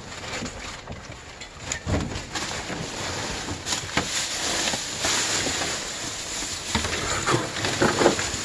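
Clear plastic bags and sheeting crinkling and rustling as trash is rummaged by hand, with cardboard and paper shifting and a few sharper clicks and knocks.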